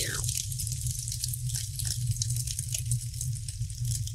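Logo sting sound effect: scattered crackling and popping over a low steady rumble, opening with a short falling whoosh.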